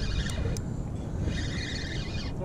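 Spinning fishing reel being cranked, its gears whirring in two short spells with a couple of sharp clicks, over wind rumbling on the microphone.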